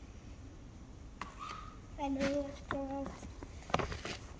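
A young girl's voice: two short, steadily held syllables about halfway through, followed by a few sharp handling clicks near the end as a gift bag is opened.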